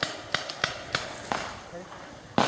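Paintball guns firing: about six sharp pops in quick, uneven succession, some close together.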